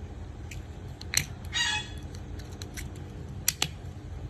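A few sharp clicks and taps as a small Ronson lighter-accessories case and a boxed lighter are handled on a glass tabletop.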